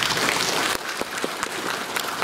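Audience applauding: a dense round of clapping that thins out to scattered single claps after about a second.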